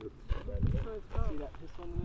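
Quiet voices of people talking nearby, with a few low, muffled thumps about half a second and a little over a second in.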